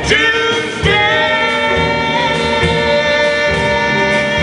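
A man and a woman singing a jazz vocal duet into microphones. A short phrase opens, then from about a second in they hold one long note together.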